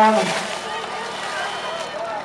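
A man's voice holds a long drawn-out word that ends just after the start, then a portable fire pump engine runs steadily under splashing water and voices.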